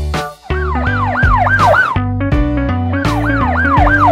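A police siren sound effect: quick rise-and-fall pitch sweeps in two runs of about five each, played over background music.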